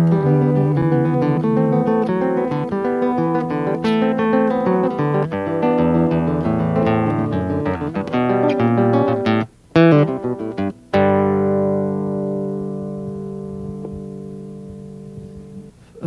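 Acoustic guitar playing the closing bars of a samba: quick plucked and strummed notes, two short stops, then a final chord left ringing and slowly fading.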